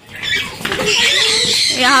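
Young children's high-pitched voices and squeals as they run about playing, with a woman starting to speak near the end.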